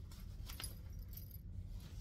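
Faint metallic jingling and clinking of a fabric project bag's zipper pull and dangling metal charm as the bag is handled, with a few light clicks.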